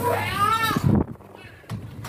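A short, high-pitched drawn-out vocal cry, about a second long, rising and falling in pitch. It is followed by quieter room noise with a couple of faint knocks.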